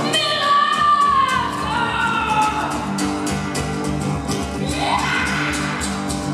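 Live acoustic band playing a folk-style arrangement, with cello, acoustic guitars and drums. A singer holds a long note that slides slowly down, and near the end the voice glides upward over a steady drum beat.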